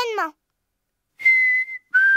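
Mouth whistling: a single steady high note about a second in, then a short break before a second, slightly lower steady note begins right at the end.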